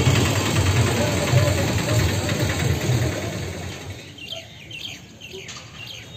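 A low, uneven rumble that fades out over the first three to four seconds, followed by small birds chirping several times.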